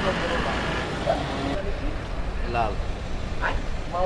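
Steady outdoor background noise, like distant traffic or machinery, with a few brief snatches of people's voices.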